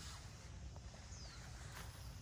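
Faint outdoor ambience under a steady low rumble, with a bird's short, high, falling chirp about half a second in and a soft click or step near the end.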